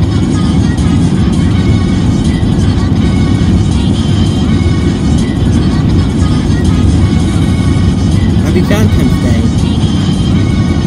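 Steady low road rumble inside a moving car's cabin, with music playing over it; a voice briefly says "okay" near the end.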